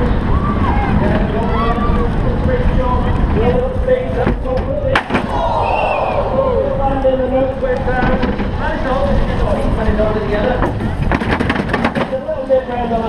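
Soapbox cart rolling fast downhill: a steady rumble of its wheels on wet tarmac with wind on the onboard microphone, under voices calling and shouting. Sharp knocks from the cart jolting come about four to five seconds in and again near the end.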